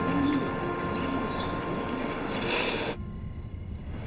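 Outdoor birdsong ambience: a dove cooing and small birds chirping. About three seconds in it cuts off abruptly to a quieter background with a faint, evenly pulsing high chirp.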